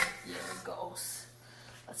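A stainless steel mixing bowl knocks once against a granite countertop at the start, then crumbly dough is tipped out of it onto the counter with a soft rustle, under a few quiet spoken words.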